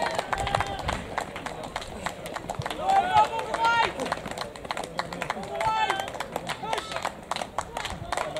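Runners' footfalls on the synthetic track as they pass in the home straight of a 400 m race, a quick run of short slaps, with spectators' voices calling out twice.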